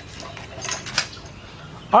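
Faint handling noise with a couple of light clinks about three-quarters of a second and a second in, then a voice starting right at the end.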